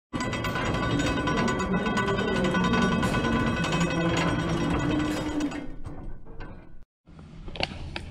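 Intro sting: music layered with mechanical gear and ratchet clicking effects, fading out about six seconds in, then a brief dropout and faint room sound.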